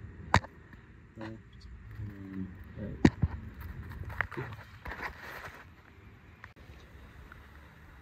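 Two sharp clicks about three seconds apart, the second one the louder, against low, uneven rustling.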